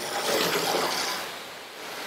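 Strong jet of water from an adjustable aluminium fire-hose car wash nozzle, opened near its maximum setting, spraying against the side of a van. It is a steady hiss of spray, louder in the first second and easing a little toward the end.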